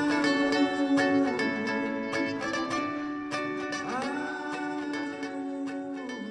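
Instrumental passage on a plucked string instrument: quick picked notes over a held low note, with a couple of bent notes, gradually getting quieter.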